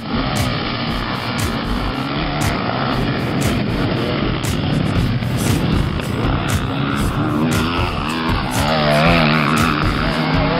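Background song with a steady beat, with the engines of a pack of motocross bikes revving underneath.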